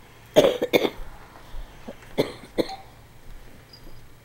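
Coughing: two pairs of short, sharp coughs, the first pair just after the start and the second about two seconds in.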